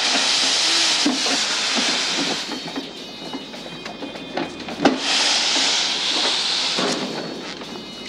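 Laundry steam press letting off steam in two long hisses, each about two and a half seconds, with a few sharp knocks from the machine as it is worked.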